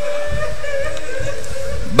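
A steady held tone over a loudspeaker system between lines of chanted recitation, with a faint wavering echo of the voice above it, fading a little near the end.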